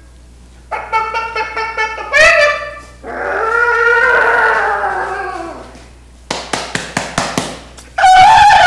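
A man imitating animal cries with his voice: a string of short pitched cries ending in a sharp rising one, then one long call that rises and falls, then a quick run of about six sharp yaps near the end.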